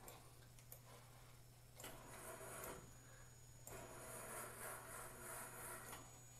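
Faint whirring of an IBM 7575 SCARA robot's servo motors and belt-driven arm as it is jogged along X in world coordinates. The whirring comes in two stretches, a short one about two seconds in and a longer one from just before four seconds to near the end, over a steady low hum.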